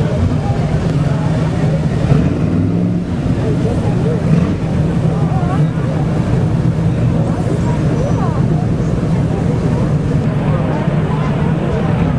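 Classic cars' engines running steadily as the cars pass slowly one after another, with spectators' voices chattering over the engine sound.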